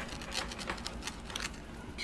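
Pizza wheel cutter rolling and pressing through a crunchy pizza crust on a board: a series of faint, irregular crunchy clicks.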